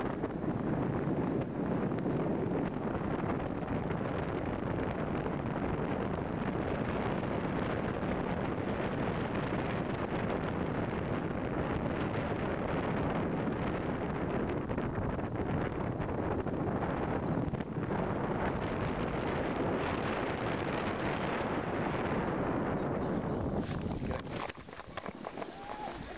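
Rushing airflow buffeting the camera microphone in flight under a paraglider, steady throughout. It drops away sharply at the very end as the glider comes down to land.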